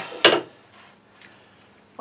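A single short knock on the workbench about a quarter second in, as a grinder cutting disc is handled and set down, followed by faint handling noise.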